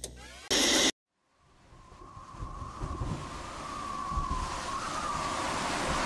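A song ends abruptly and is followed by a brief moment of complete silence. The next track's intro then fades in as a rising rushing noise with a faint wavering tone.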